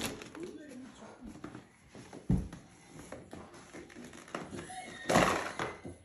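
A decorated cardboard Easter egg being handled and pulled open: scattered knocks and rustles, with a heavier thump about two seconds in and a louder rustling burst about five seconds in.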